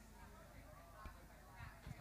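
Near silence: faint background voices with a couple of soft knocks.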